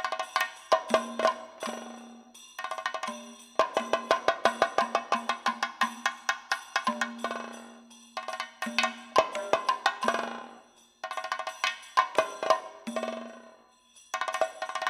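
Kathakali percussion accompaniment: quick runs of ringing, metallic-sounding strikes played in rhythmic phrases with short pauses between them, over a low held tone that comes and goes.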